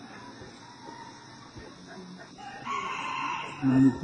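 A rooster crows once, about a second long, in the second half, under the steady hiss of an old tape recording.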